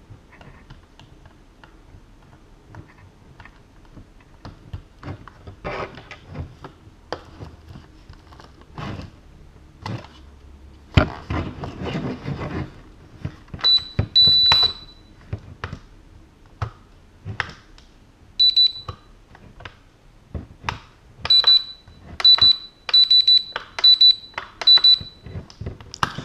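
JJRC X1 stock transmitter beeping, powered from a newly connected LiPo battery: short high-pitched electronic beeps begin about halfway through, with a quick run of about eight near the end. Before the beeps come clicks and knocks from plugging in the plastic JST connector and handling the transmitter.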